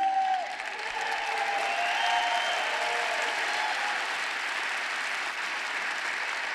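Large audience applauding steadily, with a few voices calling out over the clapping in the first few seconds.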